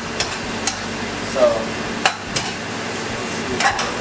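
Metal spatula knocking and scraping against a wok as noodles are stir-fried, a handful of short sharp clinks spread through, over a steady hiss of frying on a high gas flame.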